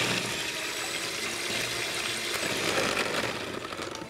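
Kenwood electric hand mixer running, its beaters whisking an oil, sugar and egg batter in a glass bowl, a steady motor hum with the whir of the liquid; it goes quieter near the end.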